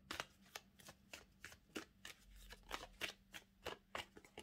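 A deck of tarot cards being shuffled by hand: a continuous irregular run of short card snaps, about three to four a second.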